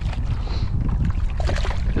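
Steady low wind rumble on the microphone, with faint scattered splashes of water from a small redfish being brought alongside the kayak.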